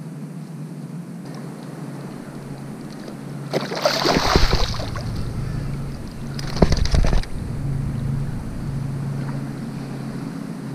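A hooked flounder splashing and thrashing at the surface of shallow water as it is landed and grabbed with a fish gripper: a burst of splashing about three and a half seconds in and a shorter one near seven seconds, over a steady low hum.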